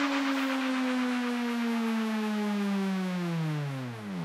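A single sustained electronic synth tone in the DJ mix, with no beat under it, gliding slowly down in pitch and then falling away faster near the end, like a siren winding down.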